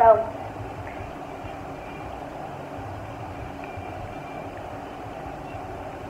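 A short spoken "so" at the start, then steady background noise with a few faint ticks.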